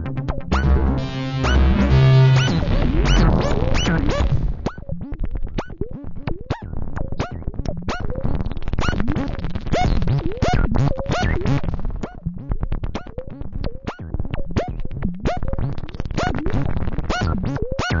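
BugBrand modular synthesizer playing a sequenced patch from a test sequencer. A thick low layered tone fills the first few seconds. After that come rapid short blips, several a second, many with quick swoops in pitch, while its knobs are turned.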